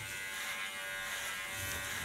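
Electric hair clipper running steadily as it shaves a short nape undercut, worked upward against the direction of hair growth with light pressure on the blade.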